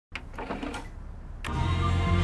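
Sony CD player's disc tray being pushed shut, with quiet mechanical clicks and whirring of the tray mechanism. Music begins about a second and a half in, and gets louder.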